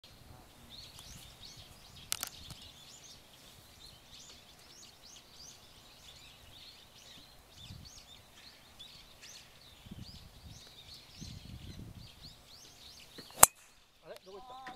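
Birds chirping in the background, with a fainter click about two seconds in; just before the end, one sharp, loud crack of a golf driver striking the ball off the tee.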